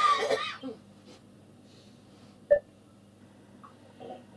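A short, loud cough at the start, then low room noise broken by a single sharp click about two and a half seconds in.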